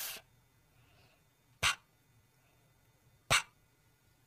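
A person voicing the phonics letter sound /p/ as short, unvoiced puffs of breath, the way one blows out a candle. Two sharp puffs come about a second and a half apart, after the tail of an earlier one at the start.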